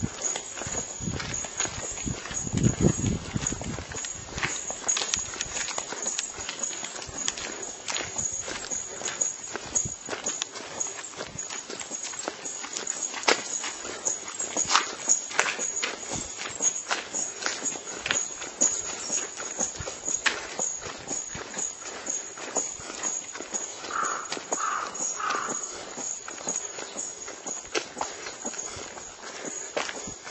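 Footsteps of a walker on an asphalt road close to the microphone, a steady run of short scuffing steps.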